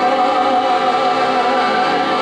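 A soprano voice sings one long held note over accordion accompaniment.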